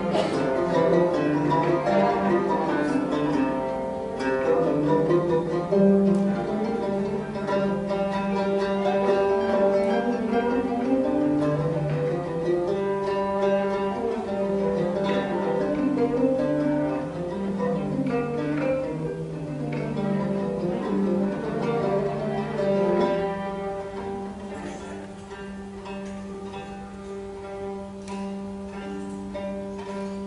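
Instrumental passage of Constantine malouf (Arab-Andalusian ensemble music): plucked string melody over a held low note, getting quieter over the last several seconds.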